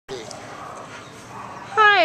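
A pit bull/American Staffordshire terrier mix gives a short, falling whimper right at the start, over a steady background hiss.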